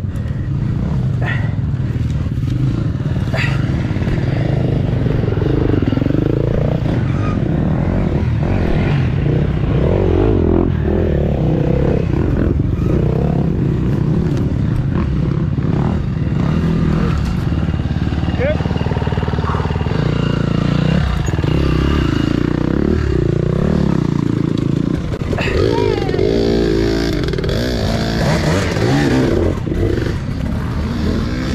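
Off-road motorcycle engines revving up and down again and again as dirt bikes pass close by on the trail, over a steady low rumble.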